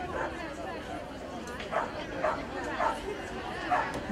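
Indistinct chatter of several voices, with a few short, louder sounds in the second half.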